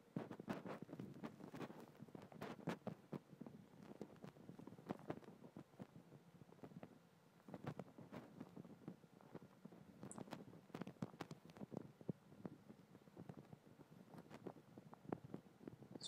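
Faint, irregular crackling and rustling of footsteps through dry grass, several small crunches a second, just above near silence.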